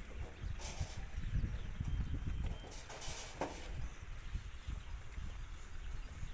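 Sheep shuffling and jostling in a pen, hooves thudding irregularly on packed dirt, with a couple of brief rustles.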